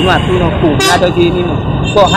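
A woman speaking, over a steady low rumble of street traffic.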